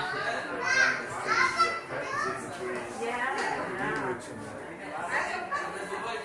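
Chatter of several people, children's voices among them, talking and calling out in a large indoor hall, with no clear words. The loudest calls come about a second in.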